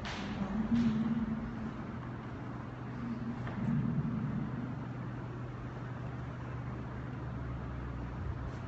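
Steady low hum of room noise, with brief faint voice sounds about a second in and again between three and four seconds.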